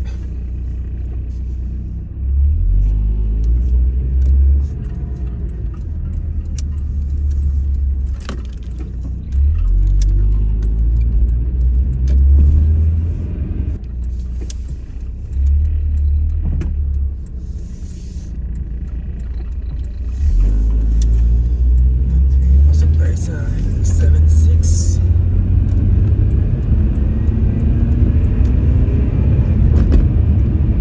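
Low rumble of a car being driven, heard from inside the cabin, swelling and easing several times as it pulls away and gathers speed, then steadier and louder near the end at freeway speed.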